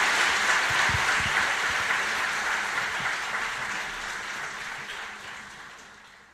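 Audience applause, fading out steadily.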